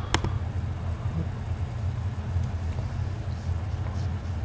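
A single computer mouse click just after the start, then a steady low background hum.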